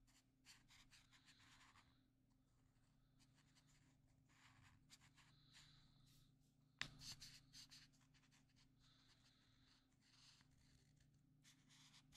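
Felt-tip marker rubbing on paper in short back-and-forth colouring strokes, faint and in irregular bursts, with one sharper tick about seven seconds in.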